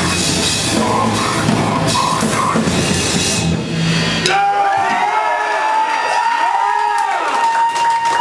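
Extreme metal band playing live: drum kit with cymbals and distorted guitar at full tilt. It stops abruptly about four seconds in, leaving a high feedback tone that swoops up and down and then holds steady.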